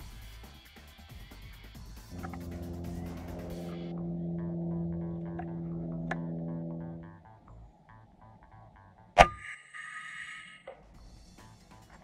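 A single sharp shot from an FX Impact MK2 PCP air rifle about nine seconds in, the loudest sound, followed by a second of faint ringing. Before it, background music holds a steady low note for several seconds.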